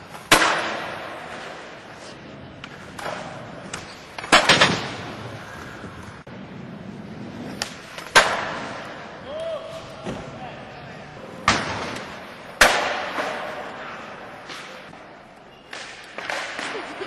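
Skateboard landings and board slaps: about six loud, sharp cracks of the deck and wheels hitting the ramps and floor, spaced irregularly and including a quick double hit. Each one fades out in a long echo from the big hall.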